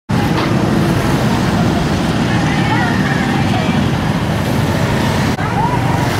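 Steady road traffic noise with indistinct voices of a gathered crowd mixed in.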